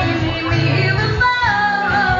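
Live band music: a woman singing over guitar accompaniment. Her sung note slides down and is held through the second half.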